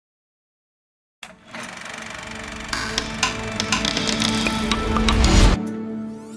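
Film logo sound design that starts about a second in. It is a dense, clattering, machine-like texture with a few held tones and a low rumble, growing louder, then cutting off suddenly near the end.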